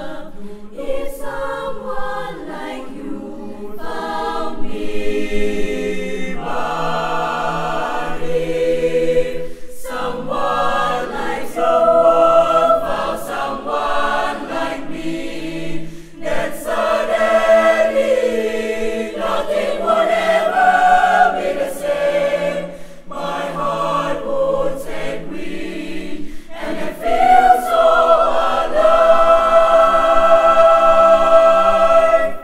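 Youth school choir of girls' and boys' voices singing in parts, in phrases broken by brief pauses, with long held chords near the end.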